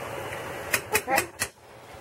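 A metal spoon clinking against a stainless pan of simmering sauce: four quick clicks in the second half, over a steady soft hiss.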